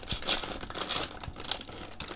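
A foil-lined Sabritas potato chip bag being pulled open by hand: the packaging crinkles and crackles irregularly, with a couple of sharper bursts in the first second.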